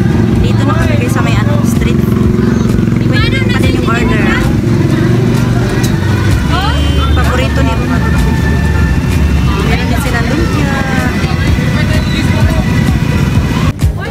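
Busy street noise: people talking in the crowd over the steady low running of motor vehicle engines close by, heaviest about halfway through.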